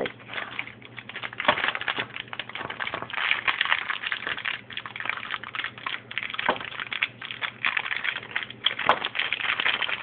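Crinkling of a plastic M&M's candy pouch as it is shaken and squeezed to pour the candies out, with a few sharp clicks as candies drop out.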